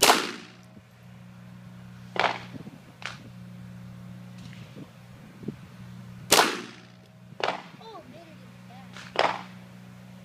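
A Ruger 22/45 Mark III .22 pistol firing single shots, about six of them spaced one to three seconds apart. The loudest come right at the start and about six seconds in.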